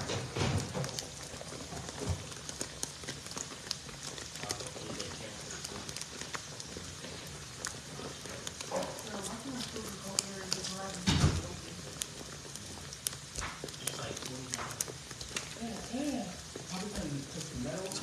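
Empanadas deep-frying in a skillet of hot oil: a steady sizzle scattered with small pops and crackles. A single louder knock comes about eleven seconds in.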